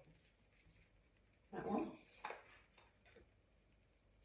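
Tarot cards being handled and drawn from the deck: soft slides and a few light clicks, the sharpest about two seconds in. Just before it comes a brief voiced murmur.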